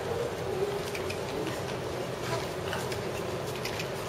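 A steady low hum with a faint buzz, and a few faint ticks scattered through it.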